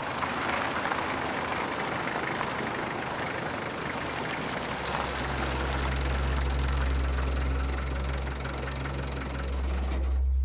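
Pickup truck (ute) driving slowly over rough ground at night: steady engine and tyre noise. About halfway through, a low steady hum comes in.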